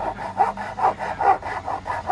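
Thin blade sawing back and forth through a thick cardboard corner protector, cutting it in two, in even strokes about two a second.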